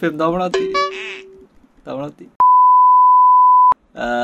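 A steady electronic beep, a single unchanging tone lasting over a second, starting and stopping abruptly with a click, laid over the talk as a censor bleep. It is the loudest sound here; a man speaks just before it.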